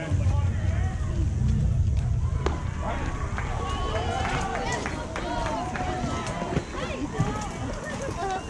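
Overlapping voices of players and spectators calling out and chattering around a baseball diamond, with a low rumble during the first two seconds and a single sharp click about two and a half seconds in.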